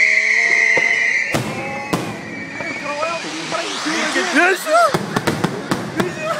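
Fireworks going off: a high, slightly falling whistle for the first second or so, then sharp bangs, and a rapid string of cracks near the end. Voices shout in between.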